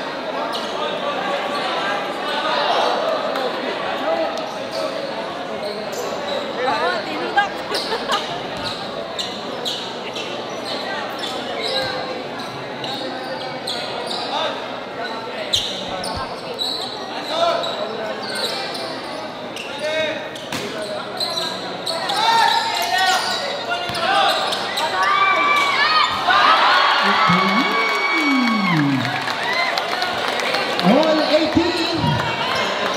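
Basketball bouncing on an indoor court amid the chatter and shouts of a crowd of spectators, echoing in a large hall. Sharp knocks come through the crowd noise, and the voices grow louder and busier near the end.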